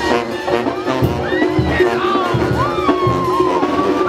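Live Oaxacan carnival brass band music: a steady bass-drum beat under a high melody whose notes slide up and down in pitch.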